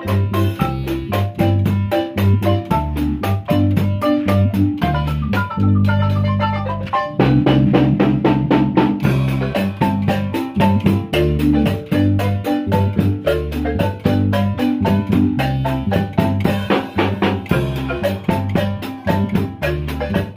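Marimba band with drum kit playing live: fast struck marimba notes over a bass line and drums. About six seconds in, a quick downward run of notes leads into a louder passage.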